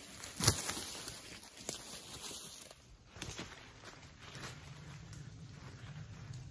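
Footsteps and rustling in dry leaf litter and brush, with a sharp crunch about half a second in, then scattered quieter crackles.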